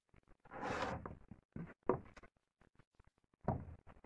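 Plywood boards being handled on a worktable: a short scraping slide about half a second in, then a few light knocks and clicks as a board is set down on the other.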